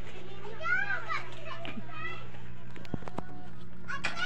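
Children's voices in the background, a few short high calls and squeals in the first half, over a steady low hum.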